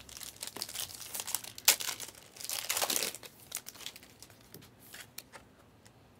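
Foil trading-card pack wrapper being torn open and crinkled. There is a sharp snap about two seconds in and the loudest crinkling just before three seconds, then only faint ticks.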